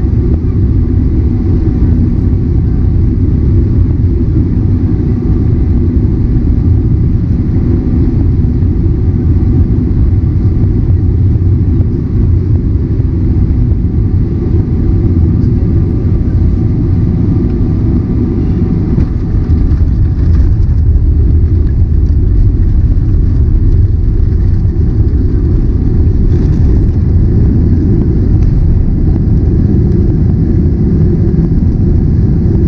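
Cabin noise of a Boeing 777-300ER heard from a window seat over the wing: a loud, steady low rumble of airflow and its GE90 engines. It grows a little louder about twenty seconds in as the jet touches down, and carries on through the rollout with the spoilers raised.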